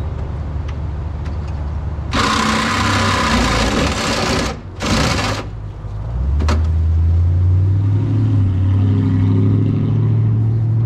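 A handheld cordless power tool cutting the sheet metal of a car door: a harsh rasping cut of about two seconds, then a second short one. From about six seconds in, a passing vehicle's engine hum rises and holds low under it, with a light click just after.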